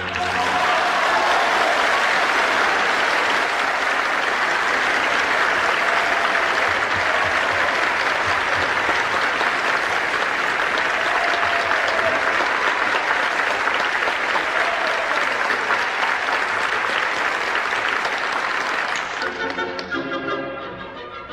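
Audience applauding in an opera house after a sung number in a live performance. The applause starts right after the singing ends and holds steady, then dies away shortly before the music resumes.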